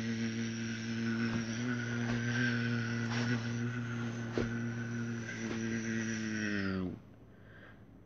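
A child's voice making a steady, droning motor noise for the R2-D2 plush as it is moved along, held for about seven seconds and dropping slightly in pitch before it stops.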